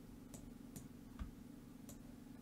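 Four faint computer mouse clicks, spread over two seconds, above a low steady hum.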